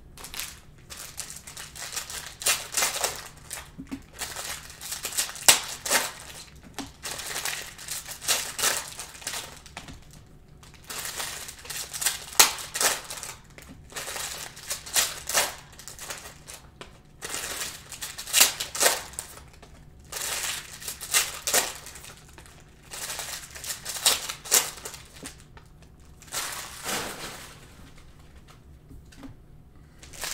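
Hands opening packs of Panini Optic basketball cards and flipping through them: crinkling of pack wrappers and cards sliding and flicking against one another in irregular bursts.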